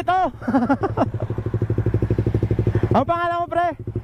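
Motorcycle engine idling steadily with an even, rapid pulse. Voices talk over it in the first second and again about three seconds in.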